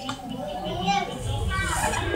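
Background voices of people talking, children's voices among them, with a low rumble coming in just past halfway.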